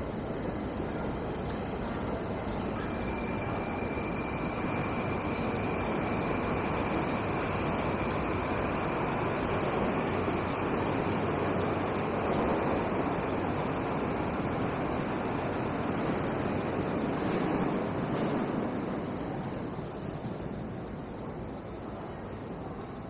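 Moscow Metro train running through the station, its rumble and rush swelling for about a dozen seconds and then easing off, with a steady high whine from about three to eight seconds in.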